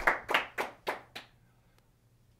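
A few hand claps, about five, roughly a third of a second apart, growing fainter and stopping after about a second and a half.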